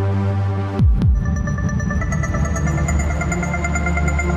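Trance techno track produced in FL Studio 12: a held synth chord, then two deep drum hits with falling pitch about a second in. A low bass and high, repeating synth notes follow.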